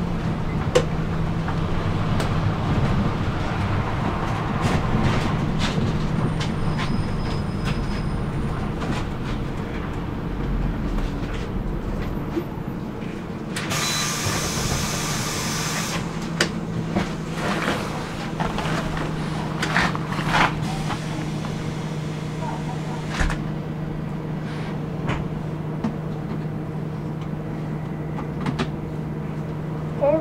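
Inside a city bus on the move: steady engine and road noise with a low hum and scattered small rattles. About 14 s in there is a loud burst of compressed-air hiss from the bus's pneumatics, lasting about two seconds, as the bus stands by a stop.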